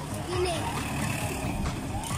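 A jeep passes on the road, its engine and tyres heard under a sung vocal from a background song.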